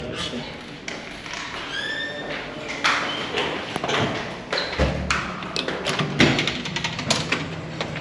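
Footsteps and a glass lobby door being worked and pushed open: scattered taps and clicks, a short rising squeak about two seconds in, a heavy thud near the middle, then a quick run of clicks and knocks.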